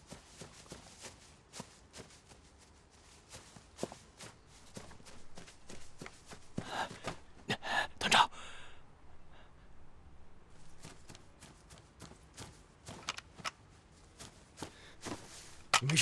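Dry reeds and tall grass rustling and crackling in short, irregular bursts as people move through them on foot and in a crouch.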